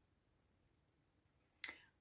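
Near silence, broken near the end by a single sharp mouth click, a lip smack of the kind made just before speaking.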